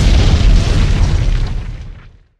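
Explosion sound effect: a loud boom with a deep rumble that fades away over about two seconds.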